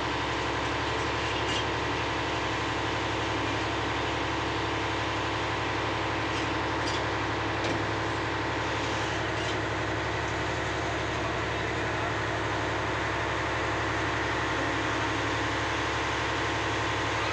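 An engine running steadily, an unchanging drone with a low hum and several steady higher tones, like a boat engine idling.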